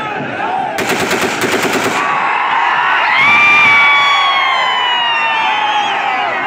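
A rapid burst of gunfire, about ten shots in just over a second, fired as a ceremonial salute. It is followed by a crowd cheering and shouting, with one long high cry held and slowly falling in pitch.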